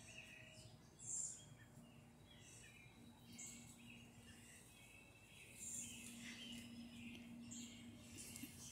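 Faint, scattered bird chirps over a very quiet outdoor background, with a slightly louder call about a second in.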